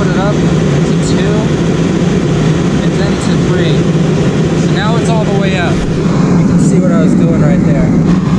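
Electric-fan propane forced-air heater running at its full setting, just lit: a steady, loud blowing noise from the fan and burner with a low, even hum beneath it.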